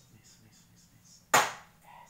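A ping-pong ball thrown in beer pong landing on the plastic cups or table with one sharp knock about a second and a third in.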